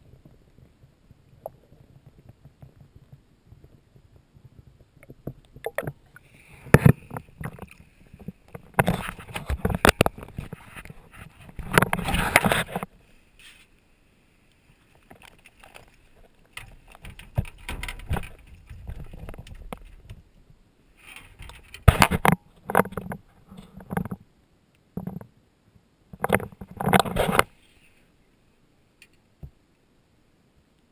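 Muffled low underwater rumble on an action-camera microphone, then from about six seconds in, loud clusters of water splashing and knocking on the camera housing with short pauses between them.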